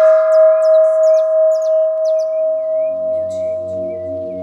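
A singing bowl rings on after a single strike, with one clear steady tone that pulses gently in loudness as it slowly dies away. High chirps sound over it, and about halfway through a soft, low ambient-music drone comes in.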